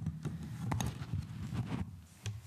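A few irregular sharp knocks and clicks from people moving about a meeting room with a wooden floor, heard over a low steady hum.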